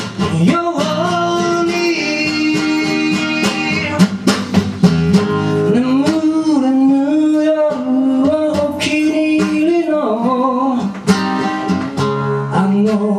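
Live acoustic blues: an acoustic guitar strummed and picked, with a blues harmonica playing long, bending held notes over it.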